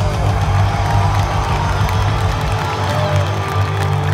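Loud live punk rock band playing through a concert PA, heard from within the crowd, with the crowd cheering and whooping over it.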